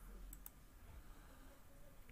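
Near silence with two faint computer mouse clicks in quick succession about half a second in.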